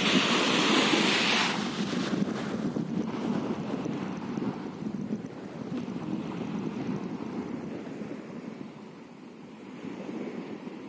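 Small waves breaking and washing up a sandy shore, with wind buffeting the microphone. Loudest in the first second and a half, then gradually fading.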